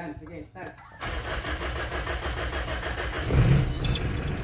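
Mitsubishi Pajero's 4M40 2.8-litre turbodiesel engine cranking and catching about a second in, then running steadily. It starts quickly on its four new glow plugs, which replaced a set that had all burnt out and were causing hard starting.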